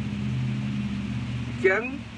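A steady low mechanical hum during a pause in a man's speech; his voice comes back near the end.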